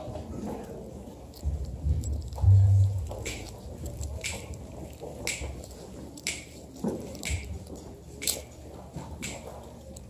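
Sharp clicks about once a second, a tempo being counted off before the jazz band comes in. A few low thumps, the loudest sound, come in the first few seconds, from the recording phone being handled.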